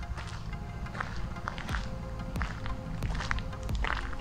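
Footsteps on a gravel path at a walking pace, about two steps a second, over background music.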